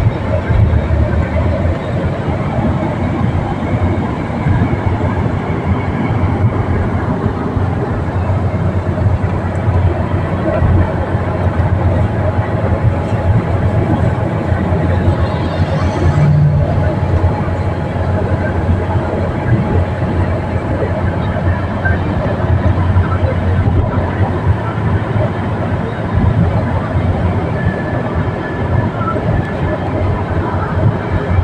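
Steady road and engine noise heard inside a moving car's cabin at highway speed, with a brief swell about halfway through.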